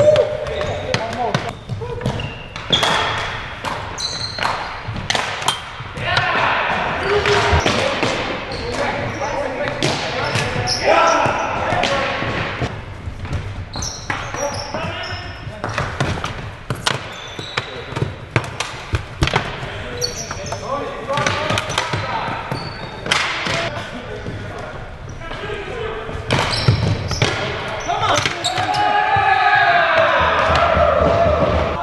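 Ball hockey on a gym's hardwood floor: sticks clacking on the floor and striking the plastic ball in quick, irregular knocks, with players' shouts echoing around the hall several times.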